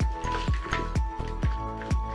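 Background music with a steady beat, about four beats a second.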